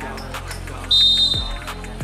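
A referee's whistle blown once: a single steady, high-pitched blast of under a second about halfway through. Background music plays underneath.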